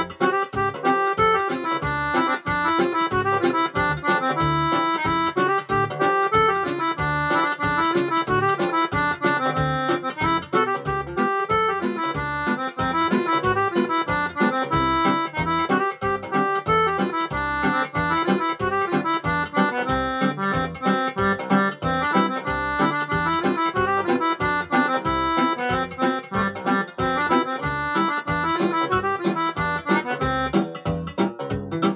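Korg Pa300 arranger keyboard played live: a lively melody in an accordion-like voice over the keyboard's own accompaniment with a steady beat.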